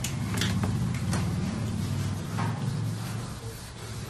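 Marker pen and eraser rubbing on a whiteboard: a few short scratchy strokes over a steady low hum.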